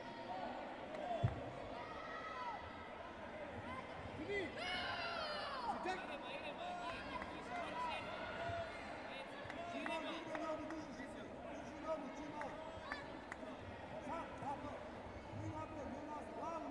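Hubbub of a busy sports hall at a taekwondo tournament: many overlapping voices and shouts from coaches and spectators, echoing. There is a sharp thump about a second in, a louder shout around five seconds in, and scattered lighter thuds.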